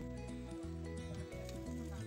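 Background music: soft, sustained notes that change in steps.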